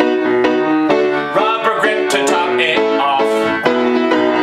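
Upright piano playing chords and melody notes in a steady rhythm.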